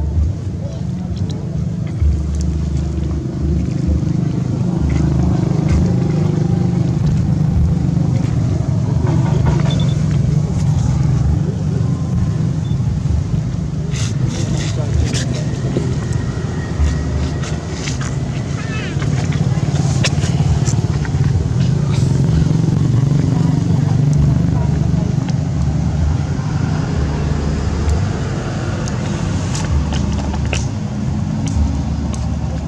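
A steady low rumble, with people's voices in the background too faint to make out and a few scattered clicks.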